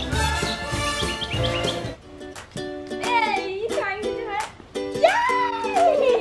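Upbeat background music. About two seconds in, the bass drops out, leaving a light plucked accompaniment with a high voice over it.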